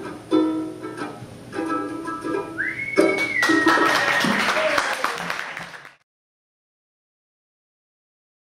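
Ninety-year-old banjo ukulele strummed through its closing chords, then applause and a high whistle that rises, holds and drops in pitch. The sound cuts off suddenly about six seconds in.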